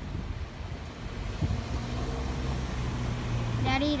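Motor vehicle engine running in the street, a steady low hum that sets in about a second and a half in over low background rumble.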